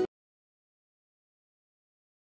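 Complete silence on the sound track: guitar background music cuts off right at the start, leaving nothing at all.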